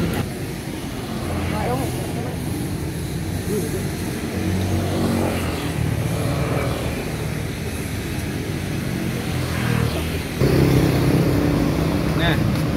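Road traffic on a busy city street: car and motorbike engines running past steadily, with a louder vehicle passing close near the end.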